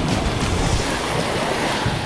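Wind buffeting the microphone, with small waves washing onto a sandy shore; a steady, noisy rush with a low rumble.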